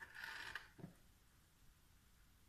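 A metal spoon scraping against a plastic bowl as it scoops soft cheese curds: one short, faint, squeaky scrape of about half a second, followed by a soft knock.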